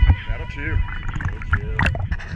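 Sea water sloshing and splashing around a camera at the waterline, with a low rumble and a few sharp splashes about three quarters of the way through.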